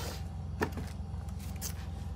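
A few short knocks and rustles as a handmade paper-and-cardstock album is moved and handled, over a steady low hum.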